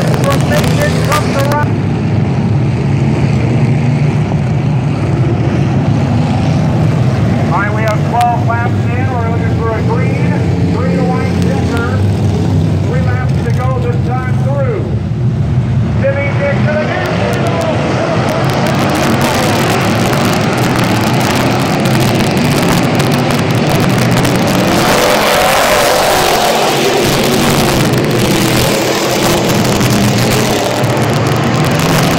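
A field of dirt-track street stock race cars running together at low speed, a steady deep engine drone that grows fuller in the second half. Indistinct voices sound over the engines through the middle.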